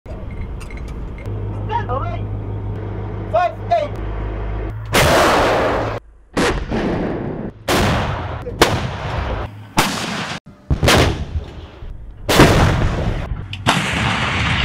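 AS90 155 mm self-propelled howitzers firing: a series of about eight sharp blasts, each trailing off in a rumbling decay, starting about five seconds in and coming every second or so. Before the first shot there is a steady low hum.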